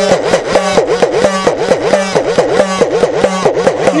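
Udukkai, the small hourglass-shaped Tamil hand drum, played in a fast, steady run of strokes, its pitch sliding up and down again and again as the lacing is squeezed and released.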